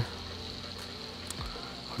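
Steady room background: a low hum with a constant high-pitched whine over it, and a faint tick about a second and a half in.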